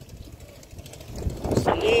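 Riding noise of a bicycle filmed on a hand-held phone: a low, steady rumble of wind on the microphone and the tyres rolling, growing louder about a second in.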